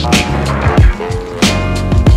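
Boom bap jazz hip hop instrumental at 93 BPM: punchy kick and snare drums, with the snare landing about every 1.3 seconds, under sustained jazzy chords. The first hook of the beat begins here, and a fuller chord layer enters about one and a half seconds in.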